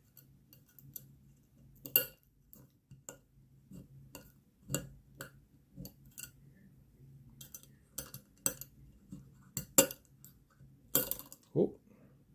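Tiny magnets clicking into place one at a time in the pockets of a fidget slider's metal plates as they are pulled off a rod of stacked magnets: a string of small, sharp, irregular clicks, with louder snaps about two seconds in and near ten seconds.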